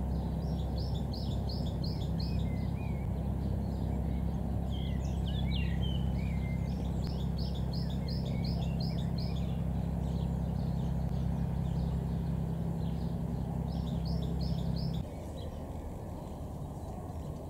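Small songbirds singing: a phrase of five to seven quick, evenly repeated high notes comes three times, with scattered chirps in between. A steady low hum runs underneath and stops suddenly near the end.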